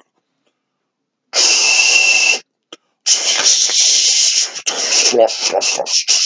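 A man's drawn-out mouth hissing, a mock peeing sound for a toy goat urinating, coming in two long spells from about a second and a half in.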